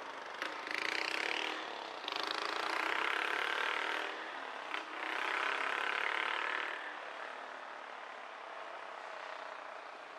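Traffic passing close by: three loud swells of engine and tyre noise, each lasting one to two seconds, over the first seven seconds, followed by a quieter steady hum.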